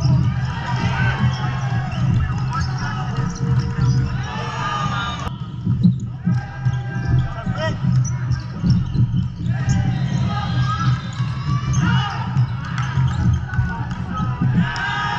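Indoor volleyball rally on a hardwood court in a large hall: the ball being struck and bouncing, many short sneaker squeaks and players' calls, over a steady low hum of the hall.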